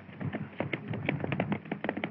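Hoofbeats of a galloping horse: a rapid, uneven run of hard clops.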